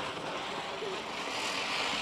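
Ground chakkar (spinning firework wheel) burning, a steady hiss as it whirls and throws out sparks.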